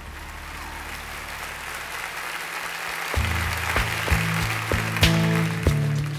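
Audience applause swelling, then an acoustic guitar starts strumming about three seconds in, a steady rhythm of roughly three strums a second.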